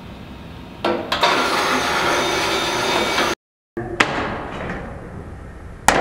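Pendulum impactor hitting a Riddell football helmet on a test headform: a single sharp, loud strike near the end. Earlier come two quick sharp clicks about a second in, then a couple of seconds of steady noise from the rig, and another click after a short break in the sound.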